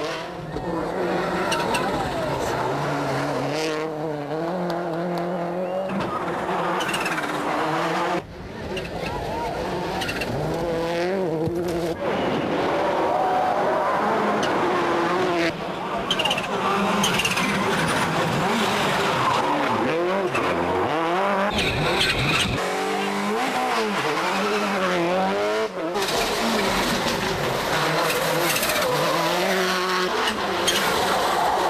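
Subaru Impreza WRC rally cars' turbocharged flat-four engines revving hard, pitch climbing and dropping through gear changes as the cars race past, with abrupt changes from one pass to the next.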